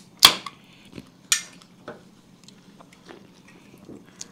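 Aluminium Coca-Cola cans being opened: sharp snaps of the pull tabs, the loudest about a quarter second in and another a second later with a brief fizz, followed by faint ticks of handling.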